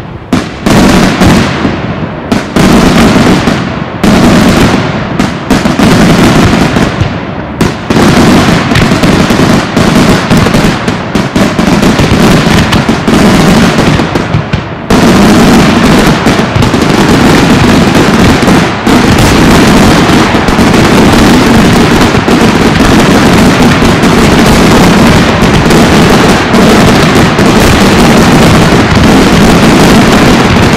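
Daytime fireworks display: aerial shells and firecrackers going off in a dense, rapid barrage of loud bangs, with a few brief lulls in the first half. About halfway through it thickens into one continuous stream of explosions.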